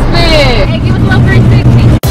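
A person's voice calling out in long, drawn-out calls that slide down in pitch, heard over a loud, steady low rumble inside a car.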